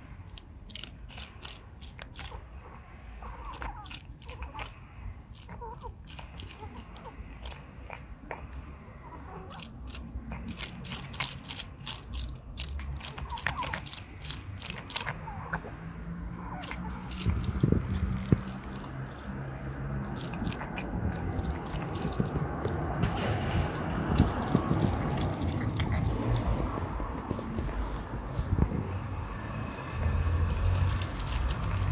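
A cat eating wet food up close, with rapid small clicking chewing and biting sounds through the first half. In the second half a low rumble builds up and grows louder, covering the chewing.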